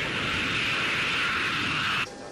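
Jet airliner engines running: a steady, high rushing noise with no change in pitch, which cuts off suddenly at the end.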